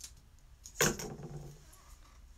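A single sharp knock about a second in, with a faint click at the start: an object being handled and set down on the craft table.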